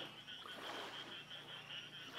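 Faint frog chorus: a steady, high-pitched pulsing trill.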